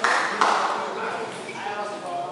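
Table tennis ball bouncing twice, about half a second apart, with people talking in the background.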